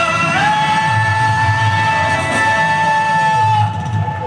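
Live band with singers: a voice holds one long sung note, sliding up into it just after the start and releasing it shortly before the end, over guitar and keyboard accompaniment.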